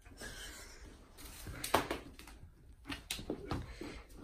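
Plastic cling film stretched across a doorway rustling as a malamute tugs at it with its mouth, with a few sharp clicks among the rustles, the loudest a little under two seconds in.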